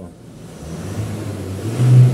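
A motor vehicle's engine running close by, with a low hum and noise that grow louder toward the end.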